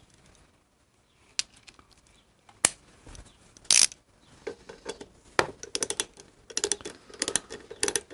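Metal hand tools clicking and clinking against a motorcycle's rear brake caliper as its mounting bolt is fitted, a few separate clicks at first, then a quick run of clicks near the end.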